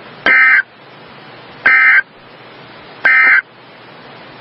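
Emergency Alert System end-of-message data tones: three short, identical buzzing bursts of SAME digital code about 1.4 s apart, over a steady hiss of radio static. The bursts mark the end of the tornado warning message.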